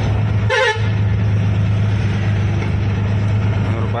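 Truck engine running steadily, heard from inside the cab, with one short vehicle horn toot about half a second in.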